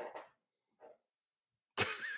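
A pause in conversation, near silent, ended about three-quarters of the way through by a sudden burst of a person's laughter.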